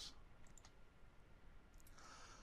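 Near silence, with a few faint computer mouse clicks about half a second in and again near the end.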